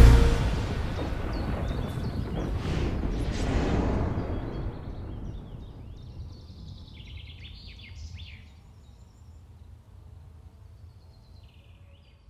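Logo sting sound effect: a heavy hit at the start, then a rushing whoosh that swells a few seconds in and fades away slowly. Faint bird chirps come through in the second half as it dies down.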